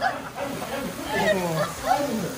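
Voices of several people talking in short, overlapping bursts, without clear words.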